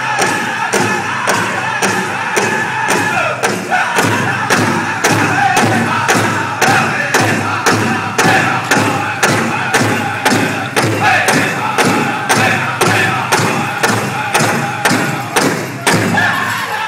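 Powwow drum group playing: a large drum struck in a steady beat of about two and a half strikes a second under high-pitched group singing.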